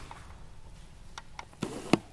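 Quiet room tone with two faint ticks, then two sharp clicks or knocks near the end, the second the louder.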